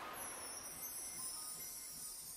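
Logo-intro sound effect: a fading whoosh with a high, shimmering chime-like sound that glides downward in pitch.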